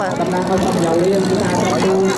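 Steady low engine drone running evenly, with voices over it.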